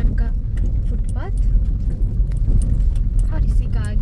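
Steady low rumble of a road vehicle on the move, with brief voices about a second in and again near the end.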